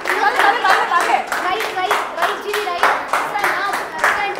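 A small group of people clapping their hands quickly and steadily, with voices over it.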